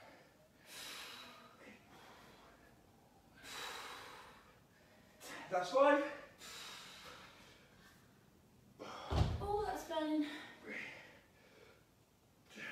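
Hard breathing of people lifting dumbbells, with noisy exhales about every three seconds and two short strained voiced grunts, the louder one about six seconds in. A low thud comes about nine seconds in, along with the second grunt.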